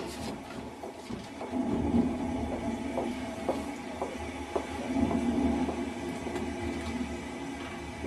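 Steady low rumbling drone with a few held tones and scattered light clicks, an electronic soundscape laid down as the performance opens.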